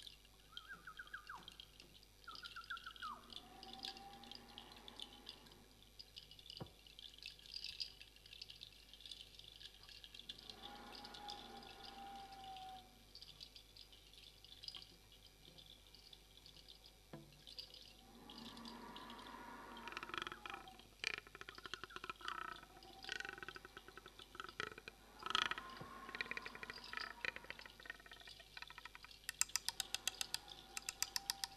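Quiet, sparse improvised music from viola and small hand percussion: a few high sliding tones, and scattered light clicks and tinkles like dripping water. The texture thickens after the middle, and a quick regular run of clicks comes near the end.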